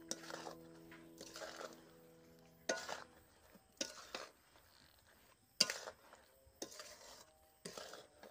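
A metal spatula scrapes and knocks against a metal wok while stirring thick mango pickle in oil, in separate strokes about once a second. Some strokes are sharper than others, and the loudest comes a little past halfway. Background music holds notes through the first few seconds and then fades out.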